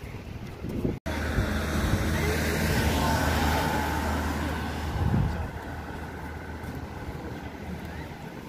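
A motor vehicle passing on the road, a steady engine hum with tyre noise that builds to a peak a couple of seconds in and fades after about five seconds.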